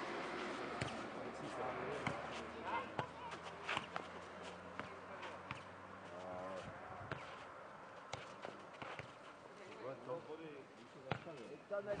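Irregular thuds of a nohejbal (football tennis) ball being kicked and bouncing on a clay court during a rally.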